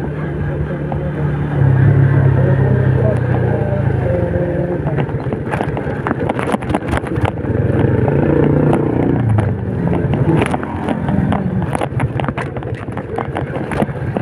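Small motorcycle engine running at low speed, its note rising and falling with the throttle. From about five seconds in, the bike rattles and knocks repeatedly over the rough, broken road surface.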